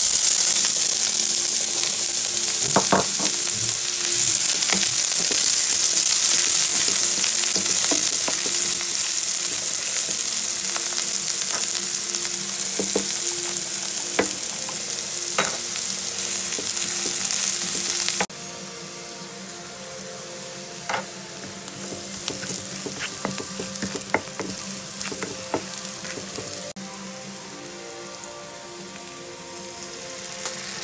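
Chopped red onion and garlic sizzling in oil in a nonstick frying pan, stirred with a wooden spatula that clicks and scrapes against the pan now and then. The sizzle is loud at first and drops suddenly to a quieter level a little past halfway.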